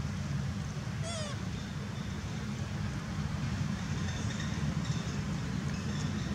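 Steady low outdoor rumble with one short, wavering high-pitched animal call about a second in.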